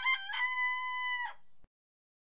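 A rooster crowing: a few short choppy notes, then one long held note that drops away at the end.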